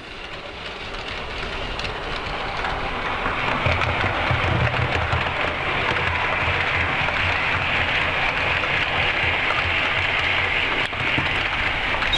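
OO gauge model train, a diesel locomotive hauling a rake of sliding wall vans, running along the layout track: a steady rushing rumble of wheels on rail and a motor hum. It grows louder over the first few seconds as the train nears, then holds.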